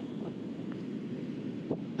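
Wind blowing on the microphone: a low, steady rumble.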